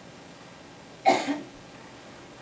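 One short cough from a person in the seated audience, about a second in, against quiet room tone.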